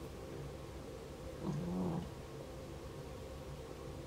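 A pet animal vocalizing once, briefly and low, about one and a half seconds in, over a steady low hum.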